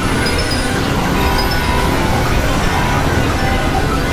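Experimental electronic noise music: a loud, steady, dense synthesizer drone with a heavy low rumble and short high tones scattered over it.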